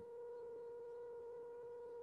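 Faint steady hum at a single pitch, with fainter higher overtones, over quiet room tone.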